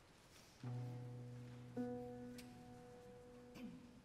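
Two low instrument notes struck one after the other, the first about half a second in and a higher one joining a second later, each ringing on and slowly fading: the choir's starting pitches before an unaccompanied piece. A few faint clicks follow.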